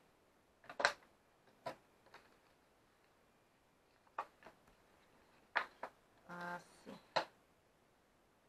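Paper and a plastic Fiskars paper trimmer being handled: sparse light clicks and taps, one every second or so, with quiet gaps between.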